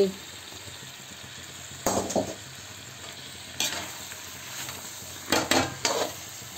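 Slotted metal spatula stirring broccoli and mushrooms into masala in a steel kadhai, over a steady low sizzle of frying. There are several sharp scrapes against the pan, a few close together near the end.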